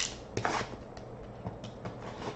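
A sealed cardboard trading-card box being pried open by hand: a sharp click at the start, a short scrape of cardboard about half a second in, then a few light ticks and rustles.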